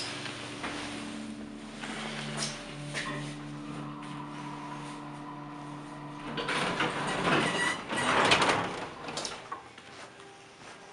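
Vintage hydraulic elevator in motion, its pump motor giving a steady low hum while the car travels. About six seconds in the hum stops and the car doors slide open with a loud noisy rattle lasting about three seconds.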